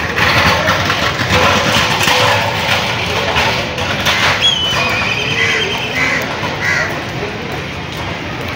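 Busy street ambience: voices of passers-by and the general noise of a crowded street, with a few short calls about halfway through.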